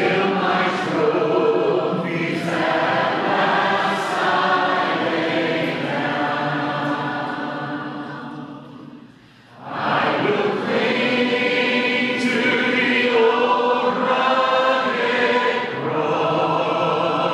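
Large mass choir singing a worship song in long, held phrases. Near nine seconds in, one phrase ends and the sound drops briefly before the next phrase begins.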